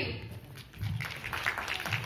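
Audience applauding, the clapping starting just under a second in.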